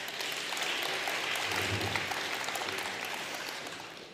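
Audience applauding, a steady spread of clapping that fades near the end.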